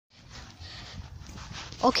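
Steady rustle and shuffling footsteps of someone walking on a paved path while filming by hand; a man says "okej" right at the end.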